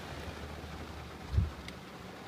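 Heavy rain pouring on a car, a steady hiss, with one dull low thump about a second and a half in.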